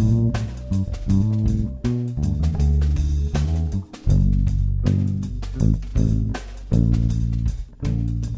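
Instrumental music: an electric bass guitar playing a line of changing low notes over a drum beat.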